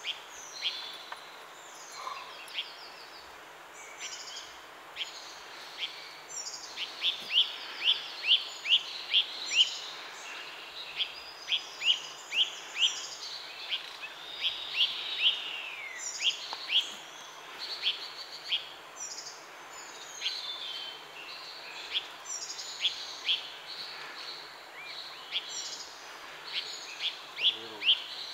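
Small birds calling and singing: runs of sharp, high chirps several a second and short trills, with a falling whistle about halfway, over a steady background hiss.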